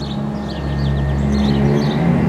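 A low, sustained drone of held bass tones, the background score, slowly swelling in loudness, with faint bird chirps above it.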